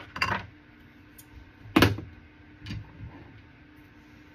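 A few short knocks and clicks, the loudest a little under two seconds in, over a faint steady hum.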